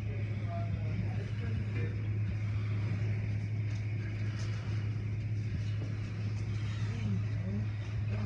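Automatic car wash heard from inside the car: water spray and hanging cloth strips sloshing over the windshield and body, over a steady low hum.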